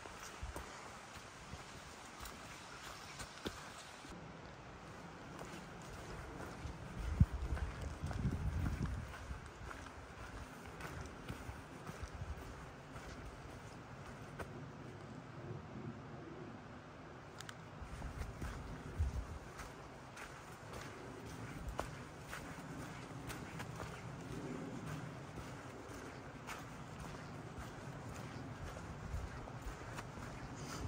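A hiker's footsteps walking steadily on a dirt trail strewn with dry fallen leaves. There are a few louder low thuds about a quarter of the way in and again just past the middle.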